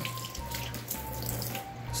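A steady hiss of noise, with a few faint, brief, thin tones over it.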